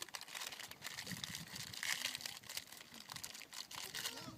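Plastic snack packet crinkling and crackling as it is handled, a dense, irregular run of crackles.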